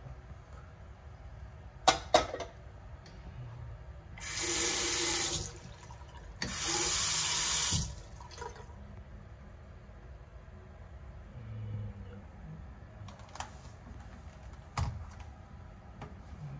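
Chrome single-lever bathroom faucet turned on twice, each time running water into the sink for about a second and a half before being shut off. Two sharp knocks come just before, about two seconds in, and are the loudest sounds.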